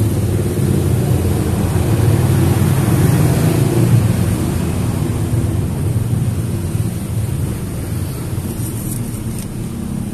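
Car engine idling steadily: a low, even hum.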